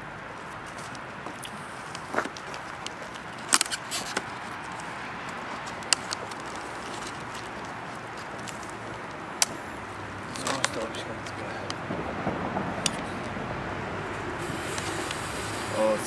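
Scattered sharp single bangs of New Year's Eve firecrackers going off around the street, over a steady background rumble. Near the end a high hiss starts: the lit fuse of a BKS mortar tube burning.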